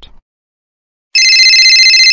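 Telephone ringing: one high-pitched electronic trilling ring, a little over a second long, starting about a second in.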